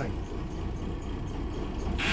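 Marine diesel engine idling steadily: a low, even rumble from the boat's just-started starboard engine.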